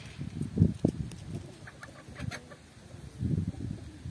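Chickens clucking, a quick run of short notes about two seconds in, over low rustling and a couple of dull thumps near the start.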